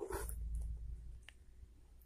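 Handling noise as a bundle of wooden craft sticks is moved and set upright on a table: a low rumble over the first part, then a single faint click a little past the middle.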